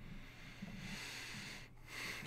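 A breath exhaled close to the microphone: a soft, even rush lasting about a second and a half, over a steady low hum.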